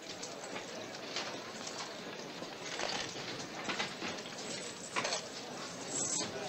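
Busy casino crowd noise: a babble of many voices with scattered sharp clicks and clacks from the gaming tables.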